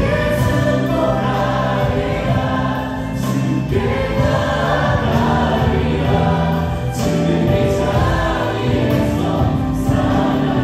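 Live worship band and team of several male and female singers singing a Korean praise song together through microphones, backed by acoustic guitar and band, with long held notes.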